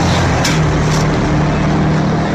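Steady motor-vehicle engine and road noise, a continuous low hum.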